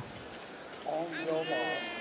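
A starter's voice over the stadium PA giving the start command to the lined-up runners: one drawn-out phrase starting about a second in, above a low hush from the crowd.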